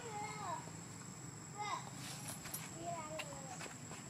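Macaques giving short, gliding coo-like calls, three or four of them spread over a few seconds, some rising and some falling in pitch.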